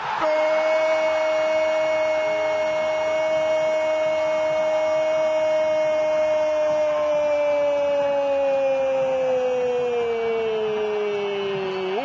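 A football commentator's long, drawn-out goal cry, 'Goooool' held on one shouted vowel for about twelve seconds, its pitch sliding slowly down over the last few seconds before it breaks off. The call announces a goal.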